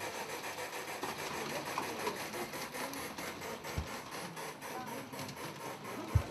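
Garden-scale model steam train running on its track: a small electric motor whirring, with a rapid, regular clicking of the wheels and running gear. A brief low thump comes just before four seconds in.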